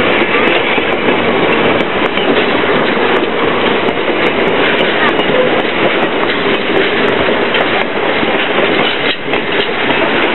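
Heavyweight railway passenger cars rolling slowly past close by, with a steady rumble and clatter of wheels on the rails.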